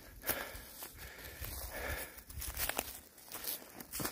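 A hiker's footsteps on dry leaf litter, with irregular crunches and rustles at an uneven pace.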